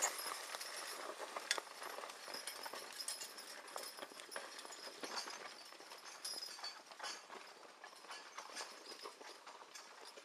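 Team of Percheron draft horses pulling a steel Oliver 23A sulky plow through garden soil: hooves clopping with a constant clatter of clicks and knocks from the plow and harness. It grows slowly fainter as the team moves away.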